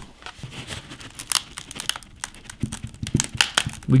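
Microsoft Surface Pro 6 tablet crackling and creaking as it is bent by hand, its screen glass already cracked: a run of irregular sharp clicks and crackles, thickest through the middle.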